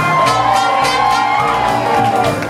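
Live jazz band with brass playing, two long high notes held over a thinned-out beat and sliding down near the end.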